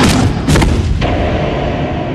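Two loud booming impacts about half a second apart, followed by a low rumble.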